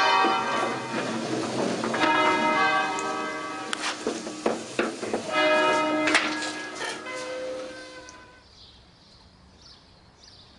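A concert of five rope-swung church bells in E-flat ringing, strike after strike with long overlapping hum. About eight seconds in, the strikes stop and the ringing dies away as the ringers let the bells go.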